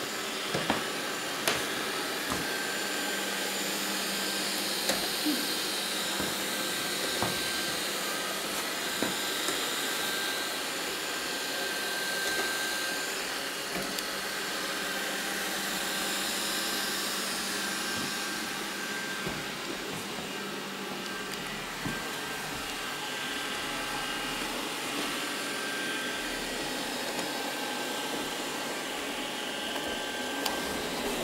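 Robot vacuum cleaner running steadily: a constant suction-fan hiss with a faint high whine, broken by a few light knocks, mostly in the first ten seconds.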